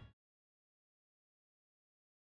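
Near silence: a loud sound from just before cuts off abruptly right at the start, then dead silence.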